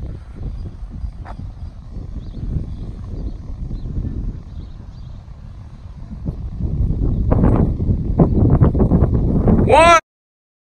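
Low rumble of wind on the microphone with faint, indistinct voices, growing louder about two-thirds of the way through. Just before the end a pitched electronic tone sweeps sharply upward.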